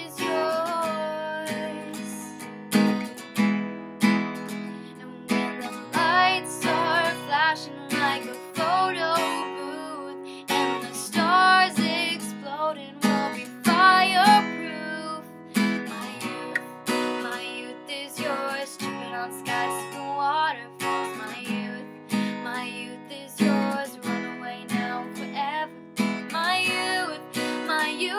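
Acoustic guitar strummed in a steady rhythm, with a woman singing over it, most strongly through the middle of the stretch.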